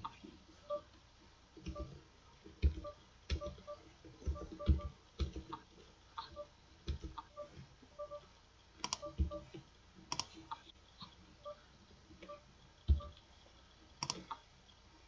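Irregular clicking of a computer mouse, a click roughly every second with a short cluster near the middle, some clicks carrying a dull thud from the desk. Faint short beeps, often in pairs, sound between the clicks.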